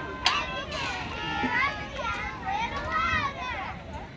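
Several children's voices shouting and calling out at once, high-pitched and overlapping, with one sharp clap or knock about a quarter second in.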